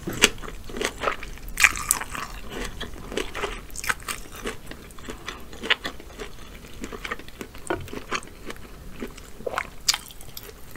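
Close-miked chewing of air-fried lobster tail meat: irregular wet mouth smacks and clicks throughout.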